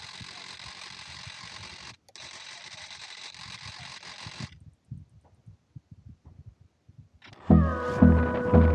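A faint steady hiss with a thin high tone, cut briefly about two seconds in and stopping after about four and a half seconds; then very quiet with a few soft knocks. Loud music with a steady beat comes in near the end.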